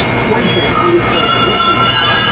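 Television broadcast audio from an advert break: a loud, steady, dense mix with a few held tones and no clear words.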